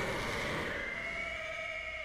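Sound from the anime episode: a long, slowly rising then easing high tone with a weaker lower tone, over a rumbling noise.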